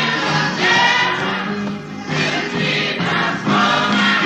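Gospel choir singing, the voices swelling and easing off in phrases of about a second each.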